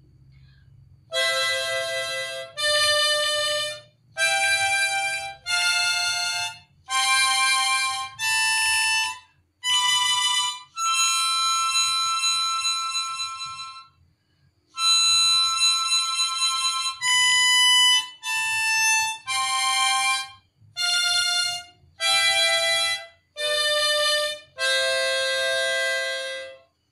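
Diatonic harmonica in C playing the major scale note by note, alternating blown and drawn notes. It climbs do–re–mi–fa–sol–la–si to a long-held high do, then steps back down the scale.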